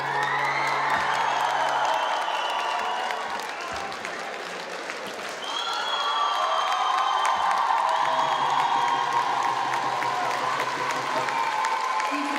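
Audience applauding and cheering. It eases off a little in the middle and swells again about five and a half seconds in.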